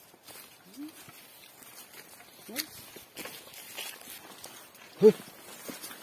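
Footsteps and rustling of people walking a jungle trail, with a few brief voice sounds; the loudest is a short, sharp one about five seconds in.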